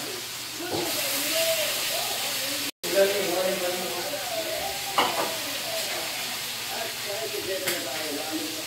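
Food sizzling in hot oil in a frying pan, a steady hiss, with two sharp utensil clacks about five seconds in and near the end. The sound cuts out completely for a moment about three seconds in.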